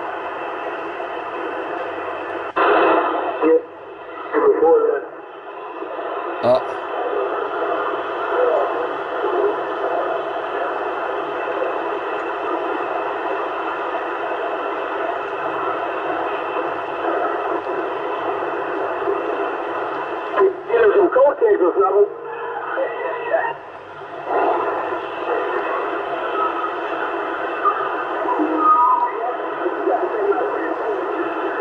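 Yaesu FT-450 transceiver receiving the 27 MHz CB band in AM as it is tuned down through the channels: steady, narrow-band static hiss. Snatches of distant stations' voices break through about three seconds in and again around twenty seconds in.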